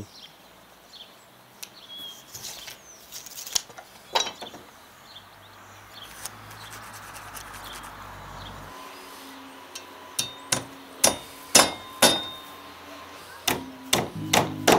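Scattered light clicks and taps, then from about ten seconds in a claw hammer strikes about six sharp blows, driving nails through a galvanised steel strap into a timber floor joist.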